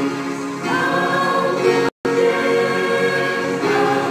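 Mixed church choir singing a slow hymn in held notes, accompanied by an electronic keyboard. The sound cuts out completely for a split second about halfway through.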